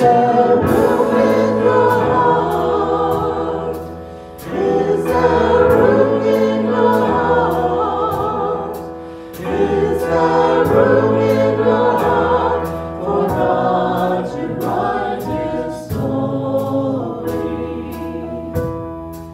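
A small mixed group of singers singing a Christmas worship song in harmony over instrumental accompaniment, in long phrases with brief breaks between them about 4 and 9 seconds in.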